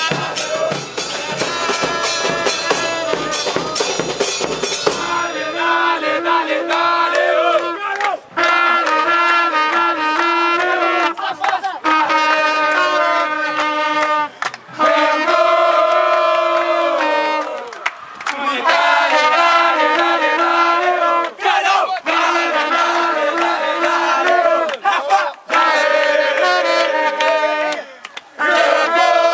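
Football supporters' band and crowd: for the first few seconds bass drums and percussion beat under crowd chanting; then a trumpet plays a chant melody in phrases of held notes, over the fans' voices.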